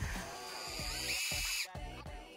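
Cordless drill running to twist two strands of wire into one cable. Its motor whine rises about a second in and then cuts off suddenly, under background music.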